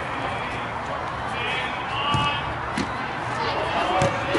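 Sound of a small-sided soccer game on a turf pitch: a steady noisy background with faint distant shouts from players around the middle, and a couple of short thuds of the ball being kicked.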